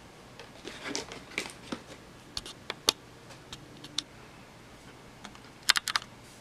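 Scattered small clicks and taps from a pocket camcorder's plastic casing being picked up and handled, with a quick run of clicks near the end.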